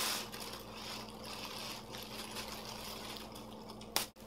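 Thin plastic bag crinkling and rustling irregularly as a cat paws and noses at it, over a faint steady low hum, with one sharp click near the end.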